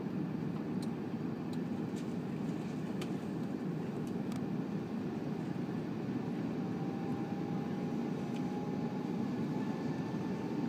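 Airbus A340-600 cabin noise on final approach: a steady low rumble of airflow and engines heard from a seat beside the wing. From about six seconds in, a faint whine rises slowly in pitch over the rumble.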